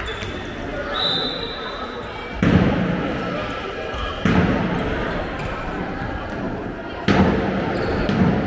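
A handball bouncing on a wooden sports-hall floor as it is dribbled, amid players' and spectators' shouts echoing in the large hall; the shouting jumps up suddenly three times.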